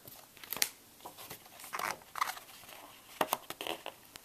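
Glossy magazine paper rustling and crinkling as it is handled and a trading card is taken off its page: a string of short rustles and sharp clicks.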